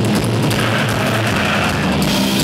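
A live heavy metal band playing loud, distorted electric guitar and bass holding a low, sustained chord over drums.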